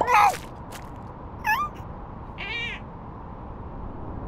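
Cartoon seal characters' squeaky, meow-like voice sounds: a loud falling squeal at the start, a short rising chirp about a second and a half in, and a brief wavering squeak soon after.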